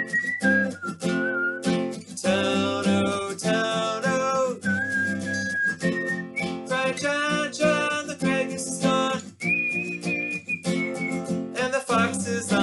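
A man singing a folk song line by line, accompanied by a strummed acoustic guitar, with a few long held notes.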